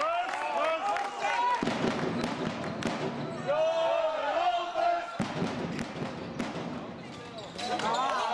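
Handball bouncing and thudding on a sports-hall floor in irregular knocks, echoing in the hall, with players' voices calling out, loudest about halfway through.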